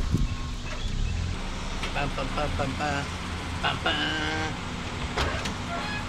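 Car engine running at low revs under light load while it pushes a dead pickup truck along, a steady low rumble. Muffled voices come in briefly partway through.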